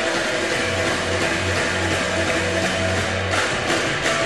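Live rock band playing: distorted electric guitars over a pulsing bass line, at steady full volume.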